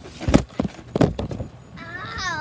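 Thumps of a person bouncing on a backyard trampoline with a handheld camera, two main landings about two-thirds of a second apart. A high, falling cry starts near the end.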